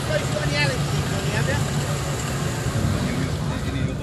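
Engine of a small Suzuki SJ 4x4 running at a steady low drone as it wades slowly through deep muddy water, with voices of onlookers in the background.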